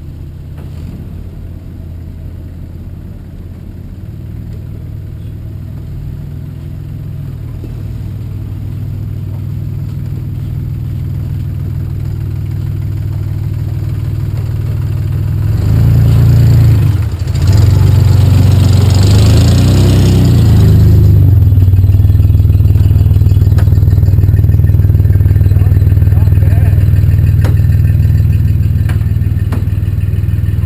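An antique Jeep's engine crawling closer over trail rock, growing steadily louder. About halfway through it revs as the Jeep climbs the rock, the pitch rising and falling, then it runs loud close by and eases off near the end.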